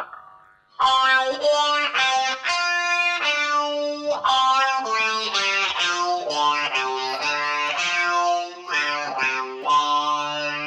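Electric guitar played through a Banshee talk box, a lead line of single notes starting about a second in. The player's mouth on the tube shapes the vowels without voicing them, so the notes take on a vowel-like, talking quality, picked up by a microphone at the mouth.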